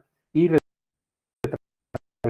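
A man's voice says one short word in Spanish, then a pause of dead silence broken by a brief sharp click about one and a half seconds in.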